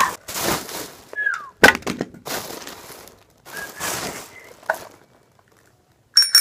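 Thin plastic bag rustling and crinkling in irregular bursts as hands rummage through it, with one sharp click about a second and a half in.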